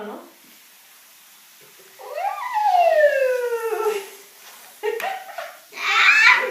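A long, excited 'whoooa' from a child, rising briefly and then sliding down in pitch over about two seconds. Shorter excited exclamations follow near the end.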